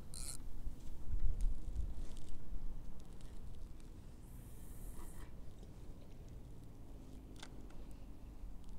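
Handling sounds of a feeder rod and reel being cast out with a bomb rig: a short high swish near the start, low buffeting about a second in, a high hiss of line about four seconds in, then a few small clicks from the reel.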